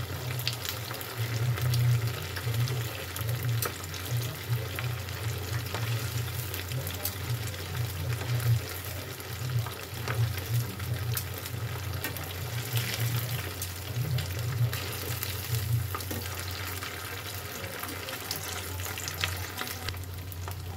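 Batter-topped tofu fritters deep-frying in hot oil in a pan: steady sizzling and crackling with scattered sharp pops, as the pieces are turned over with metal tongs.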